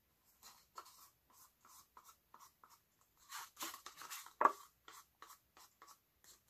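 Wooden stir stick scraping thinned acrylic paint out of a paper cup: a run of short scrapes, about three a second, with one sharper, louder stroke about four and a half seconds in.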